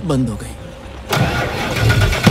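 A car engine cranking on its starter motor. The cranking begins about a second in, and the engine does not catch: the car has broken down and will not restart.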